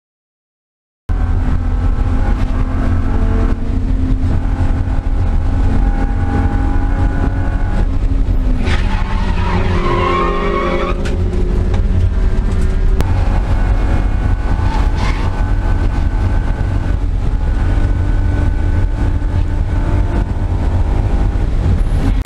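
Heard from inside the cabin, a 1998 BMW M3's straight-six engine is running hard on track from about a second in. Near the middle the Yokohama AD08R tires squeal for about two seconds, with a shorter, fainter squeal a few seconds later: tires locking and scrubbing with the ABS intermittently out, flat-spotting them.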